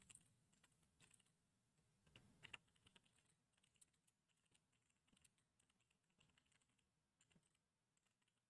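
Near silence with faint, scattered computer keyboard key clicks, a few taps with a short cluster about two and a half seconds in.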